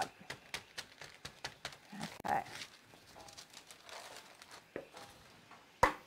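Parchment paper crinkling and crackling with many small clicks as a veggie burger patty is pressed and handled, busiest in the first couple of seconds, then a single sharp click near the end.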